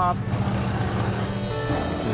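A car driving past, a steady engine and road noise, with music starting about three-quarters of the way through.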